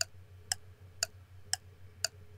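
Stopwatch ticking sound effect, sharp even ticks about two a second, over a faint low room hum.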